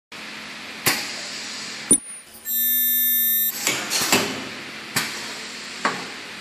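Plastic tube sealing machine running a seal cycle. It makes sharp mechanical clacks, then a steady high whine lasting about a second while the tube end is welded, then further clacks as the jaws release. A faint steady hum runs underneath.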